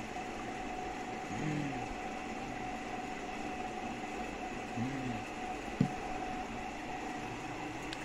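A man drinking lassi from a plastic cup, with two short low sounds from his throat as he swallows and a sharp click about six seconds in, over a steady mechanical drone with a hum in the room.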